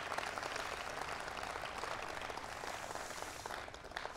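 Audience applauding, the clapping thinning and dying away near the end.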